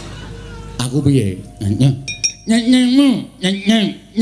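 A wayang kulit puppeteer's voice in a high, swooping character voice starting about a second in, with a few quick metallic clinks of the kepyak, the bronze plates the dalang strikes to punctuate the action, about two seconds in.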